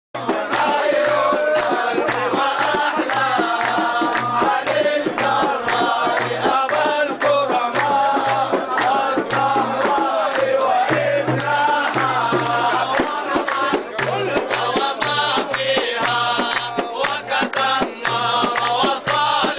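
Religious chanting in praise of the Prophet: a group of voices singing together, with percussion beats throughout.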